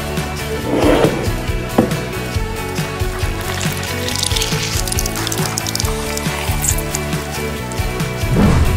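Background music with a steady beat. Beneath it are a couple of knife cuts through a lemon on a wooden board in the first two seconds, then a wet squelch and dribble of lemon juice being squeezed out by hand around the middle.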